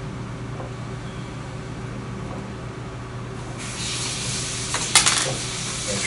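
Quiet handling of small steel lathe parts on a tabletop, with one short sharp metallic clink about five seconds in, over a steady low hum.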